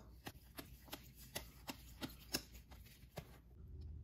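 Glossy football trading cards being flipped and slid one over another in the hands, making faint, irregular soft clicks a few times a second.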